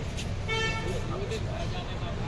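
A vehicle horn gives one short toot about half a second in, over a steady low rumble of street traffic.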